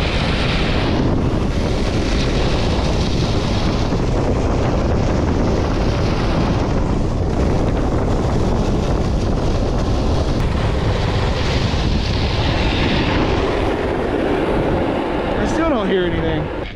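Snowboard base and edges scraping steadily over icy, hard-packed groomed snow while riding, mixed with heavy wind rumble on the action camera's microphone.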